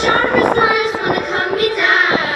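A young solo voice singing over backing music, with some long held notes.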